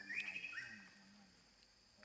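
A quick run of high chirping animal calls, stepping up in pitch, in the first second, then fading.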